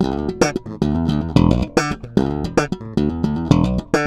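Sterling by Music Man S.U.B. StingRay 4 electric bass played in a quick riff of plucked notes with sharp, percussive attacks, several notes a second.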